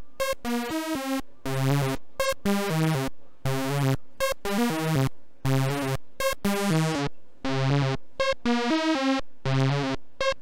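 SSI2131-based Eurorack VCO playing a repeating sequence of short synth notes, each dying away quickly. The tone turns duller for a couple of seconds from about seven seconds in, then brightens again near the end as the oscillator's knobs are turned.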